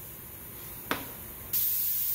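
Harbor Freight deluxe airbrush spraying: a sudden steady, high hiss of air and rinse fluid starts about one and a half seconds in, as the gun is run until it is dry to flush it between paints. A single small click comes just before.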